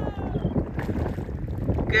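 Wind rumbling on the microphone over choppy sea water.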